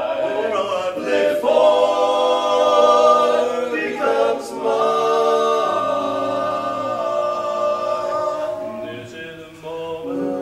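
Male barbershop quartet singing a cappella in four-part close harmony, moving through held chords, with a brief breath just before a new phrase near the end.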